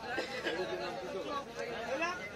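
Background chatter of several people's voices, with no clear chop of the knife.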